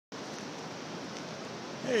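Steady, even hiss of light rain and surf on a beach.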